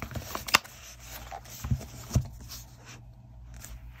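Cardboard tarot deck box handled and set down on an open workbook: a few light taps and knocks, the sharpest about half a second in, then two duller thumps around two seconds in.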